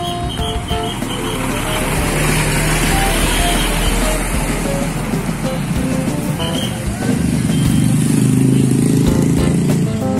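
A heavy truck drives past with a swell of tyre and engine noise, then motorcycle engines run close by near the end. Guitar background music plays throughout.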